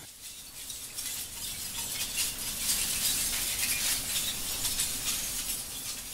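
Lumps of incinerator bottom ash clinking and rattling against each other: a dense patter of small glassy clinks that builds over the first couple of seconds and eases off near the end.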